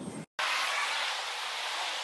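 Traffic on a city street: cars driving past, a steady hiss of tyres on the road that starts abruptly after a brief silence about a third of a second in.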